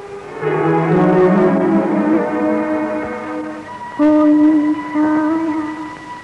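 Orchestral film-song music with no singing. A full swell of many instruments rises about half a second in, then a single held melody line enters near the end.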